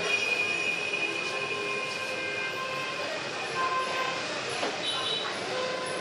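Portable electronic keyboard sounding scattered held notes as a toddler presses its keys: a few thin tones of different pitches, each starting, holding for under a second and stopping.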